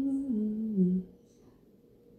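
A woman's closed-mouth "mm-hmm", a hum of agreement that steps down in pitch and stops about a second in.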